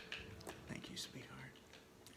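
Quiet room with faint whispering and a few soft clicks.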